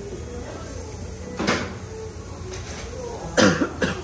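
A person coughing, once about a second and a half in and then twice in quick succession near the end, over a steady low room hum.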